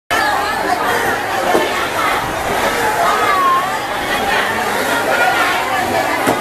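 Crowd of vendors and shoppers at a busy fish market chattering, many voices overlapping in a steady babble.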